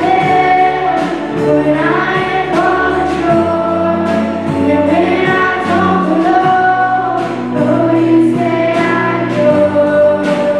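A live worship band plays a slow contemporary Christian song. Several female voices sing the melody together over keyboard, acoustic guitar and a drum kit keeping a steady beat with cymbal hits.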